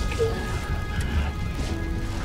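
Dramatic background music of long held tones over a low, rough rumble with crackling noise: a burning-fire sound effect.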